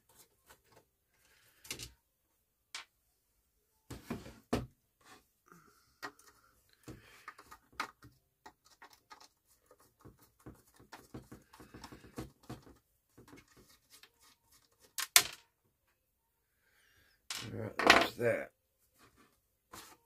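Scattered small metallic clicks, taps and clunks from the painted sheet-metal cabinet of a 1940s Motorola table radio and its screws being handled and worked on, with one sharp click about three quarters of the way in.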